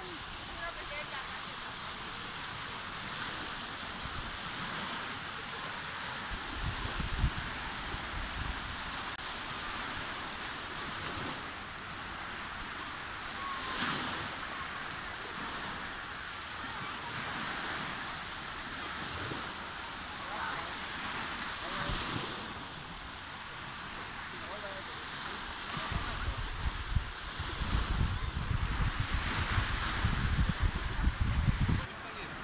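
Small Baltic Sea waves washing onto a sandy shore, a soft wash swelling every few seconds. Wind buffets the microphone briefly about six seconds in and again over the last few seconds.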